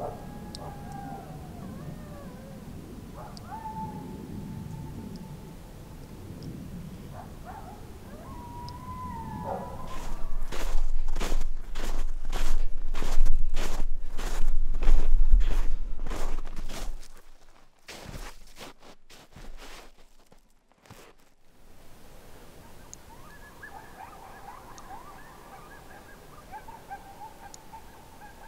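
Distant coyotes howling and yipping, faint gliding calls over the first several seconds and again near the end. In between, footsteps crunching through snow at a steady walking pace for about seven seconds, the loudest sound, then slowing to a few steps.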